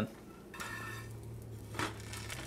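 Bread frying in butter in a skillet with a faint sizzle while a metal spatula turns the slice over, with one light clink of the spatula on the pan near the end.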